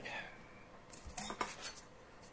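A few light metallic clinks and scrapes about a second in, as a Gerber Mark II boot knife is picked up and handled.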